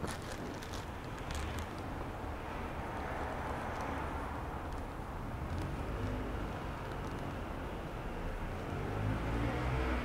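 Steady low background noise: a faint rumble and hiss with a low hum, and no distinct events.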